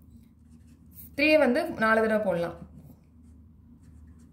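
Pen writing on paper, a faint scratching under a man's voice, which says "three" about a second in.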